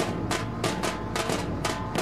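Music driven by fast, steady drumming, about four drum strokes a second, over sustained instrument tones.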